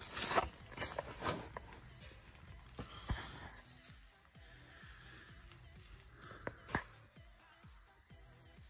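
Faint scuffs and a few sharp clicks and knocks, the loudest about three seconds in and again near the end, from someone crouching on pavement while handling a phone, over faint background music.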